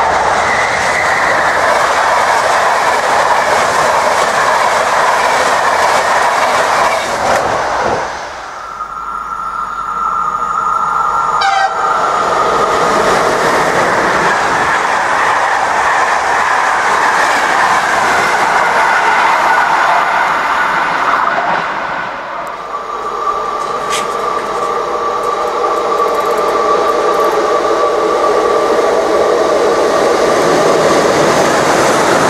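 Electric-hauled passenger trains running through a station, heard as a loud, steady rush and rattle of coaches passing. A steady high tone is held for a few seconds about a third of the way in. In the last third a ČD class 242 electric locomotive pulls in with several steady whining tones.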